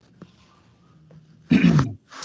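A man coughs once, sharply, about a second and a half in, after a short stretch of faint room noise.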